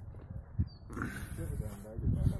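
Indistinct voices of people talking, louder in the second half, over a steady low rumble.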